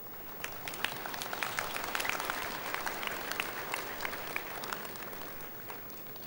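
A church congregation applauding, many hands clapping together: it swells quickly about half a second in and then dies away near the end.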